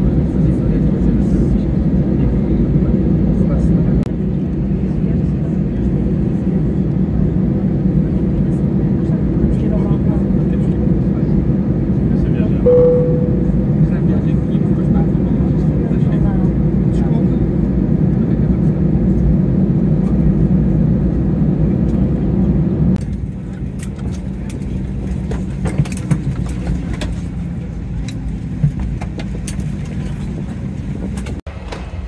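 Steady rumble of an Airbus A320's CFM56 jet engines and cabin noise, heard from a window seat as the aircraft taxis after landing, with a brief tone about halfway through. About three quarters of the way through, the sound drops to a quieter cabin with scattered clicks and knocks.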